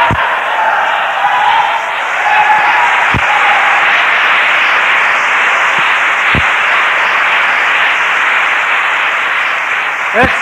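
Lecture audience applauding, a dense continuous clapping for about ten seconds, with a few voices heard in the first couple of seconds and occasional low thumps.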